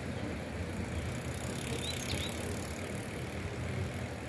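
A bicycle coasting up with its freewheel buzzing faintly, over a steady low rumble. There is a short high chirp about two seconds in.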